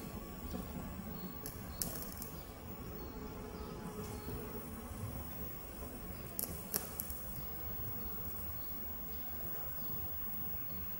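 Quiet room tone with a few light clicks: one about two seconds in and a quick pair near seven seconds, from metal tongs holding a burning piece of paper soaked in an alcohol–water mixture.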